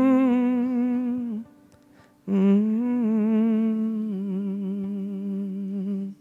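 A man humming two long held notes with vibrato, the second longer and stepping down in pitch partway through, over a quiet sustained instrument note.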